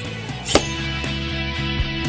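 Sparkling-wine bottle sabered: the blade's stroke against the collar snaps off the neck and cork with a single sharp crack about half a second in. Background music plays throughout.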